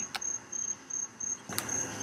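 A faint, high-pitched chirp repeating about three times a second in the background, with two soft clicks, one near the start and one late in the pause between spoken sentences.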